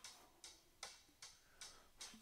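Faint, evenly spaced hi-hat ticks from a programmed pop drum track, about two and a half a second, with no saxophone playing.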